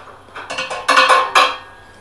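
Metal hand tools clinking and rattling against the steel leaf-spring hanger bolt as it is tightened with locking pliers and a wrench: a quick cluster of clicks lasting about a second.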